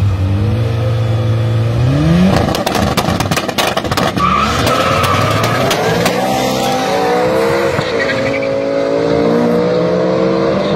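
A BMW M5 and a 1.8 turbo Mk2 VW Golf are held at steady raised revs, then launch hard about two seconds in. The launch brings a couple of seconds of tyre squeal and crackle, and then the engines climb in pitch through gear changes as they pull away.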